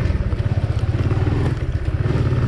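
A Honda motorcycle's small single-cylinder engine running steadily as the bike pulls away and picks up speed at low speed.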